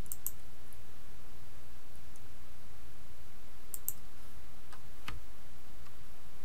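Computer mouse clicking a few times at irregular intervals, including a quick pair at the start and another pair a little before the four-second mark, over a steady low background hum.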